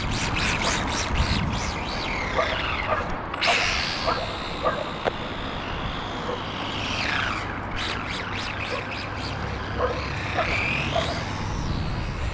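Carisma GT24 1/24-scale RC rally car's electric motor and gears whining, the pitch rising and falling as it speeds up and slows. Rapid ticking over the first few seconds.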